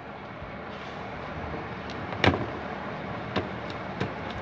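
Light clicks and taps from a CRT TV's wiring and circuit board being handled, with one sharper click a little past halfway, over a steady background noise.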